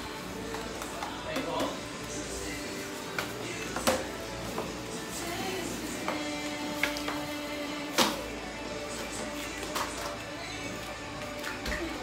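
Background music playing steadily, with a few light knocks, the clearest about four and eight seconds in, as cardboard paper rolls are set down on a plastic table.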